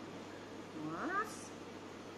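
A woman's short wordless vocal sound, a rising "mm?" or "ooh", about a second in, followed by a brief hiss, over quiet room tone.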